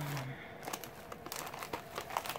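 Plastic snack packaging crinkling in the hands as it is handled, a run of light, irregular crackles.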